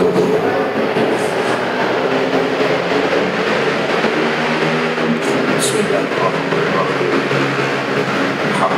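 A man talking into a handheld microphone, his voice partly buried under a steady rushing noise.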